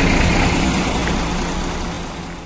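Tour bus engines idling in a steady low hum, fading out gradually.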